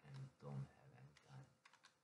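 A man's low, quiet mumbling or humming in short bits, then a few faint clicks near the end.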